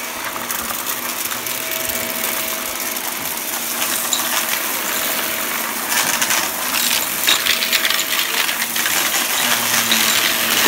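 Shark Rotator upright vacuum running over carpet with a steady motor hum while it sucks up small hard debris that clatters and ticks through the machine. The clatter grows denser from about six seconds in.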